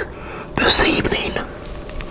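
A man whispering a short phrase, about a second long, starting about half a second in.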